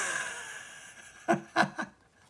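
A soft rustle of comic-book paper fading away, then a short chuckle in three quick bursts about a second and a half in.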